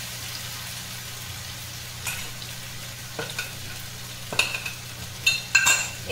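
Vegetable cubes frying in oil in an iron kadai, a steady sizzle. A few light clinks of kitchenware come from about two seconds in, the loudest and most ringing ones near the end.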